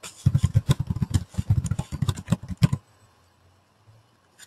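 A quick run of keystrokes on a computer keyboard, typing a short phrase, that stops a little under three seconds in.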